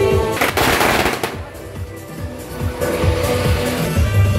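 A string of firecrackers going off in a rapid crackle for about a second, over loud procession music that drops back and returns near the end.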